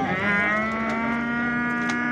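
A young bull mooing: one long, steady call held at an even pitch.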